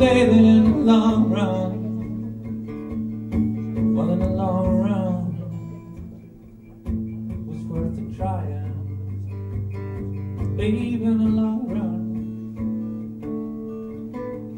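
Live band music led by acoustic guitar, with a bending melodic line over the steady guitar chords. It drops quieter around six seconds in, then comes back in suddenly.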